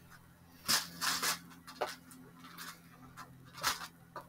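A handful of short, irregular crinkling and clicking sounds, hands handling some small object or packaging, loudest twice, near the start and near the end.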